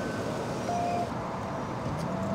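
Steady vehicle and road-traffic noise, with a brief thin tone a little under a second in.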